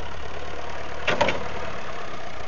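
International 3414 tractor-loader-backhoe's engine idling steadily, with one short clatter a little over a second in.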